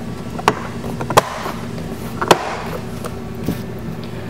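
Plastic door-trim clips on a BMW X1 door panel snapping into place as the trim is pressed home by hand: a few sharp clicks, the loudest a little past two seconds in.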